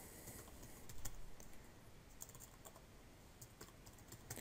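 Computer keyboard typing: faint, irregular keystrokes, with a few close together about a second in.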